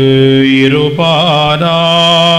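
Male voice chanting a liturgical melody of the Mass in held notes that step up and down in pitch, with a slight waver on some notes.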